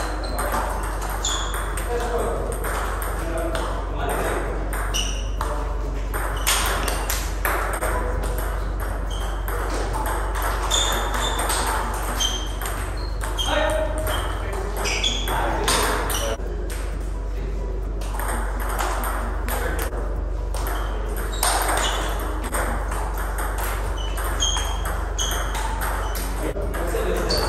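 Table tennis balls clicking off paddles and tables in rallies at more than one table: a steady, irregular stream of short high pings and sharp taps over a low steady hum.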